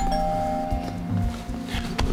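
Two-note doorbell chime, a higher note followed closely by a lower one, ringing on and fading out over about a second and a half, over soft background music.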